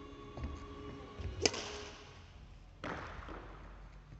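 A badminton racket strikes a shuttlecock about one and a half seconds in: a single sharp crack that echoes in the large hall. A second, rougher impact follows just over a second later.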